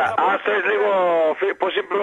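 Speech only: a man talking over a telephone line, his voice thin and narrow, with one long drawn-out syllable in the middle.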